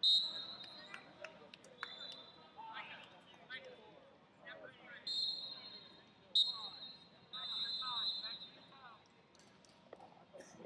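Referee's whistle blown several times: a sharp blast right at the start, short blasts a few seconds in, and a longer blast of about two seconds near the end, stopping and restarting the wrestling. Shouting voices of coaches and spectators run underneath.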